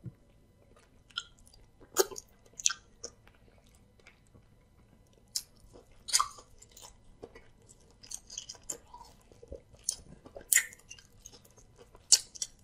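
Close-miked mouth sounds of a person eating amala with soup by hand: wet chewing, lip smacks and sharp clicks at uneven intervals, loudest about two seconds in, around six seconds and near ten and a half seconds.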